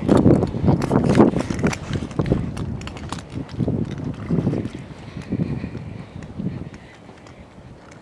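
Footsteps and handling knocks while walking with a phone camera, with wind buffeting the microphone. Loudest in the first two seconds with a quick run of knocks, then dying down to a quieter rumble of wind near the end.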